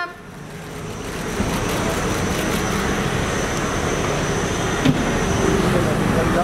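Car engine and road noise: a steady rushing sound that swells over the first second and a half and then holds level, with a single click near the end.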